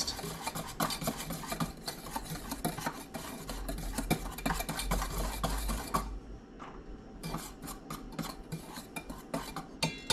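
Wire whisk stirring flour and dry seasonings in a stainless steel bowl: fast, steady scraping and ticking of the wires against the metal. About six seconds in the strokes thin out and soften.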